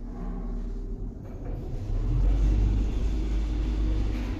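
Evans passenger lift car travelling down between floors: a steady low rumble of the ride, growing a little louder about halfway through.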